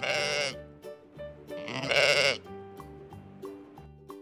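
Two wavering sheep bleats, one right at the start and one about two seconds in, over light background music.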